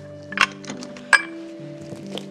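Two sharp clinks of glass against a glass mixing bowl, the second, just after a second in, louder and ringing briefly, over soft background music.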